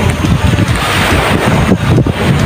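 Strong wind buffeting the microphone: a loud, uneven rumble that swells and drops with the gusts.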